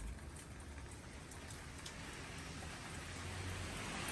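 Outdoor ambience of a snowstorm: a steady hiss of falling precipitation with a few faint ticks on surfaces and a low rumble, slowly growing louder.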